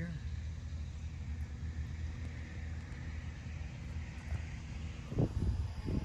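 Road traffic: a steady low rumble, with the hiss of a passing car's tyres swelling and fading in the middle.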